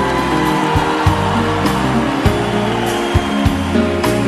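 Live band music: an acoustic guitar over steady bass notes, with a regular beat of drum hits about twice a second.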